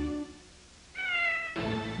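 A single short cat meow about a second in, falling slightly in pitch: the MTM Enterprises closing-logo kitten. The closing theme music ends just before it, and another music cue starts about a second and a half in.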